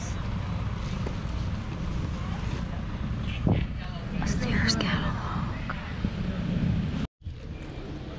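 Outdoor background of low wind rumble on the microphone with faint murmuring voices of other people nearby, and a single knock about three and a half seconds in. The sound cuts out abruptly for a moment about seven seconds in.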